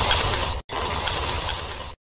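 Dense crackling noise in two stretches, with a brief break just after half a second, both cut off abruptly.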